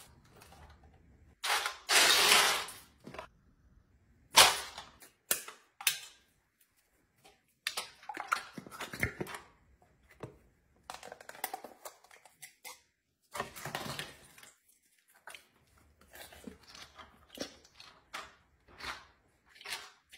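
Dry pasta shells pouring from a cardboard box into an aluminium foil pan, a rattling rush about one and a half to three seconds in. After it come scattered short clicks, knocks and rustles as plastic tubs and the foil pan are handled and the dairy ingredients are dropped in.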